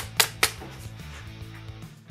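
Background music, with three quick, sharp swishes in the first half second from banknotes flicked one after another off a stack.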